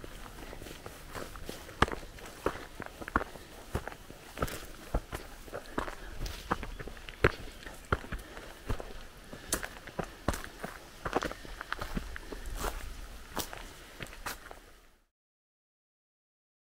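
Footsteps crunching on a stony dirt hiking path at a steady walking pace. The sound cuts off suddenly near the end.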